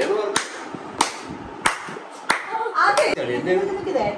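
Hand claps, five sharp, evenly spaced strikes a little over a second and a half apart each, under talking voices.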